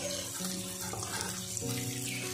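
Sliced onions sizzling in a little oil in an old blackened kadai while being stirred, under background music with sustained notes.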